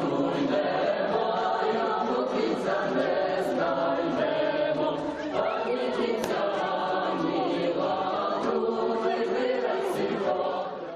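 A group of young men and women singing a hayivka, a traditional Ukrainian spring song, together, with steady singing and no breaks.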